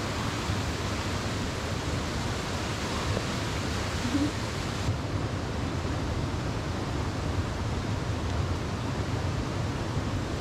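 Steady rush of a fast-flowing creek running over rocks and ice. The highest part of the hiss thins a little about five seconds in.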